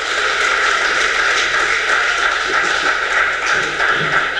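Audience applauding, a steady round of clapping from a seated crowd that dies away near the end.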